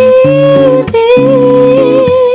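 Acoustic guitar accompanying a woman's voice holding two long, slightly wavering notes, with a short break just before the second, about a second in.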